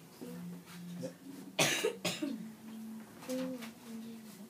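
Nylon-string classical guitar playing slow, single held notes of a D major scale, the pitch stepping upward note by note. A loud cough cuts in about one and a half seconds in.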